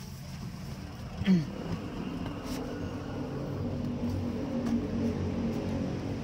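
A car's front door unlatched with a sharp click about a second in, as it is opened from inside. This is followed by a steady low hum whose pitch wavers slightly.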